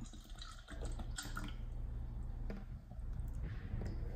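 Water poured from a plastic bottle into a clear plastic cup and then into a small plastic cup, splashing and dripping, with a few light clicks as the bottle is handled.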